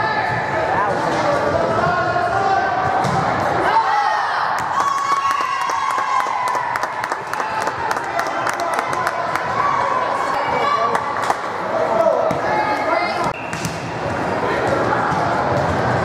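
Volleyball rally sounds in an echoing gym: sharp ball hits and thuds, then raised, high-pitched shouting and cheering voices with a quick run of claps as the point is won.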